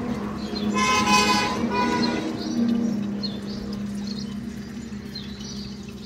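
Water running from a pipe through a metal strainer into a plastic water container. A vehicle horn honks briefly about a second in and again around two seconds, over a steady low hum.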